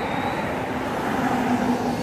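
Steady background noise with a faint, even low hum and no distinct events.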